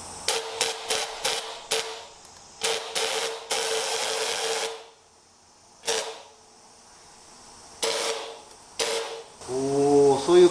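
A lithin hopper spray gun on a compressed-air line, triggered in hissing bursts as it is tried out: five quick blasts, then two longer ones of about a second each, then a few more short ones, each with a faint whistle-like tone.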